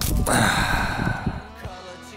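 A man's loud gasping breath lasting about a second, just after a short knock, then fading.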